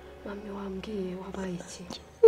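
A woman speaking quietly, in a low, soft voice.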